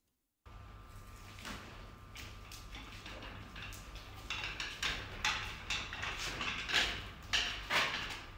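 A wheelchair being pushed across a bare concrete floor: irregular rattles, knocks and footsteps over a steady low hum. The sounds start suddenly about half a second in and get louder from about four seconds in.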